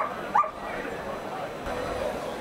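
A German Shepherd dog giving two short, high yips, each rising in pitch: one right at the start and another about half a second later.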